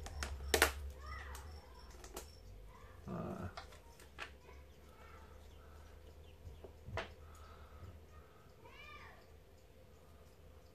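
Thin plastic deli cup and tub being handled: a few sharp clicks and taps of the plastic, the loudest about half a second in, others spaced a couple of seconds apart.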